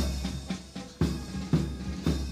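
Military band drums playing a march, with a heavy stroke about once a second.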